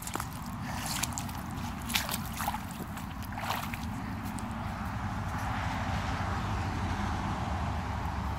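Water sloshing and gurgling as a foot steps through soft creek mud and shallow water, with a few short crackles in the first half.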